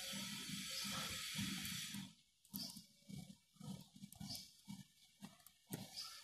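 Laptop keyboard keys being tapped in quick, irregular succession as each key is tried to check that it works. There is a faint hiss under the first two seconds, and it cuts out.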